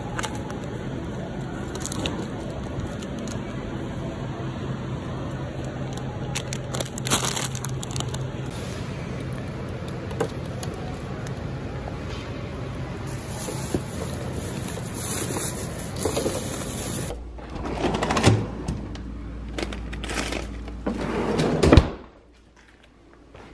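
Grocery store background noise with a steady low hum and scattered handling clicks as produce and packages are picked up. After a cut it becomes quieter, with a plastic bag being rustled and handled, loudest near the end.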